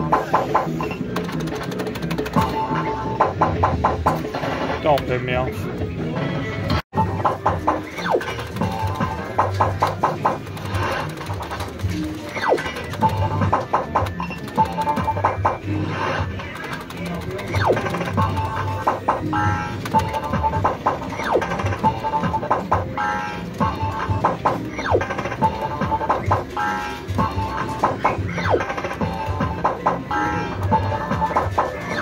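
Crystal 'Pot of Gold' fruit machine in play, sounding its electronic bleeps and jingles with bursts of rapid clicking. Short beeps repeat at even spacing through the second half. The sound cuts out for a split second about seven seconds in.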